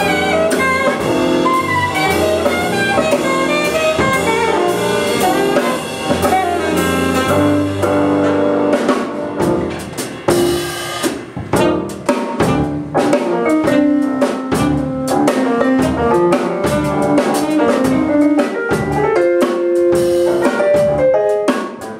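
Live jazz band playing: a saxophone plays a fast-moving line over keyboard, electric bass and drum kit. About halfway through, the drum hits come to the front and the saxophone line thins out.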